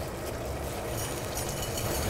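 Steady drone of a commercial kitchen's extractor hood and gas burners, with a faint trickle of coarse salt being poured into a dry, hot pan near the end.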